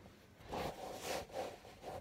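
Soft rustling of clothing fabric being handled, in short scratchy patches after about half a second.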